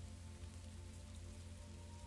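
Faint steady rain sound bed under soft ambient music of sustained held tones, with a higher tone joining about halfway through.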